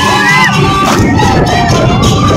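A crowd of children shouting and cheering, many voices overlapping.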